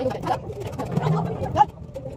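Indistinct talking of several people, with one short loud exclamation or sound near the end.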